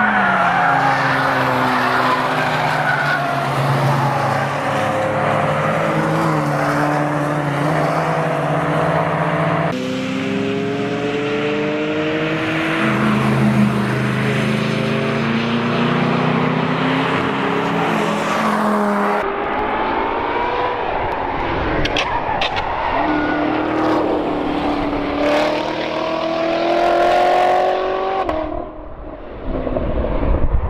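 Cars at racing speed on a circuit, engines revving up and down through gear changes as they pass, in three separate recordings that change abruptly about ten and nineteen seconds in. First a Dodge Viper ACR's V10, then a Ford Mustang.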